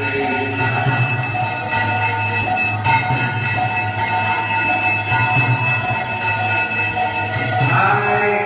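Temple arati bells and cymbals ringing on and on, a dense steady jangle of metal over a low steady hum.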